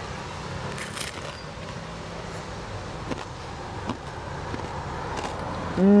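A person biting into and chewing a crusty bread torta drenched in tomato sauce: a few faint crunches and clicks over a steady low background rumble. The bite ends in a pleased hum of 'mmm'.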